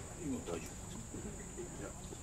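Steady high-pitched insect trill, an even continuous drone with no pauses, over faint distant voices.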